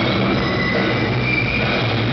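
Live rock band playing a sustained, droning passage: amplified electric guitar held over a steady low drone, with thin high whining tones wavering on top. It is loud, with no clear drum beat.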